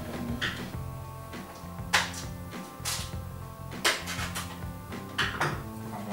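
Stiff plastic packaging of a phone case crackling and clicking in about five sharp bursts as it is pried open by hand, over quiet background music.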